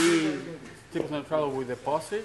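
Men's voices talking in conversation, with no engine running.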